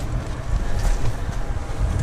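Small drum cement mixer running steadily, its drum turning a wet sand mix for bricklaying mortar.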